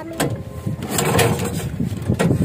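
Bangka outrigger boat's engine running with a rapid low chugging that grows louder over the first second, as the boat gets under way.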